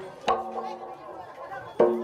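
Metal gamelan-style percussion of the live dance accompaniment: one note struck about a quarter second in rings on steadily, then new strikes come near the end as the music starts up.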